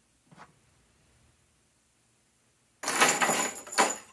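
Metal lamp chain clinking: a small click of a link against the lamp's top ring, then, about three seconds in, a loud jangling rattle of links as the chain is lifted and drawn taut under the weight of the lamp, with one last clink.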